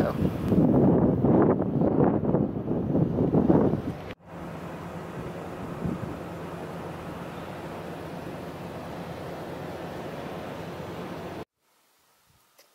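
Wind buffeting the microphone, loud and gusty for about four seconds. After a sudden cut it becomes a steadier, fainter rush of wind with a faint low hum, then drops out abruptly to silence just before the end.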